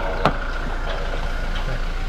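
Toyota Fortuner front door handle pulled and the door latch clicking open once, about a quarter second in, over a steady low engine-idle hum.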